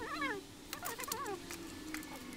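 Several short, wavering pitched calls from an animal, with a few sharp clicks of small metal parts being handled about halfway through and at the end.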